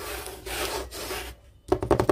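A sheet of paper rubbed and slid about by hand on a desk, a dry scraping rustle. It stops briefly, then comes back near the end as a quick run of short scratchy strokes.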